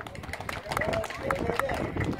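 A man speaking, his voice faint and broken, with scattered short sharp clicks.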